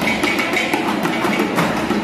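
Dhak drums, Bengali barrel drums, beaten in a fast, continuous rhythm of dense strokes.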